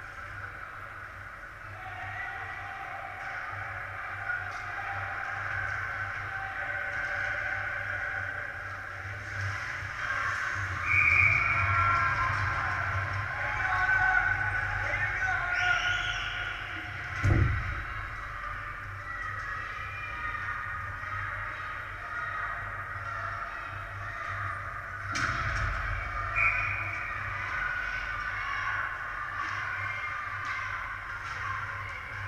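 Ice hockey rink sound: a steady mix of players' and spectators' voices echoing in the arena, with a short, shrill referee's whistle about eleven seconds in and again near the end. A sharp bang from the play on the ice cuts through about halfway, and a lighter one follows some eight seconds later.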